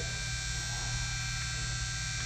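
Steady electrical mains-type hum with a strong low tone and a set of fainter high steady tones.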